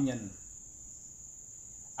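A steady high-pitched tone is heard during a pause in a man's speech. His last word trails off in the first half-second, and he starts speaking again at the very end.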